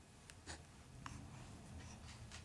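Near silence: room tone with a low hum and a few faint, short clicks.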